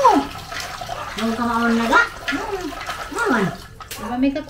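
Water running from a tap and splashing in a basin as something is washed by hand, with short voice-like sounds over it.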